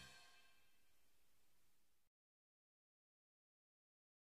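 Near silence: the last inaudibly faint trace of a song dying away, then complete digital silence about two seconds in.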